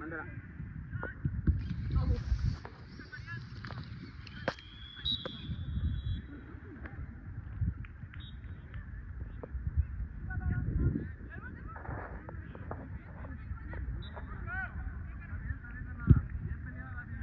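Open-air ambience at a soccer match: a low rumble that swells and fades, scattered thuds of the ball being kicked, and several short honking calls, most around the middle and near the end.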